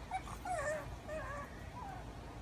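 Pug puppy whining with a stick in her mouth: a run of short, high, wavering whines, the sign of her frustration at not getting the stick through the fence doorway.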